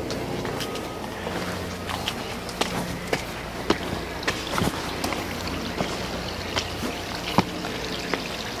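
Steady hum with water trickling from a swimming pool's rock water feature, broken by scattered sharp clicks of footsteps on the stone deck.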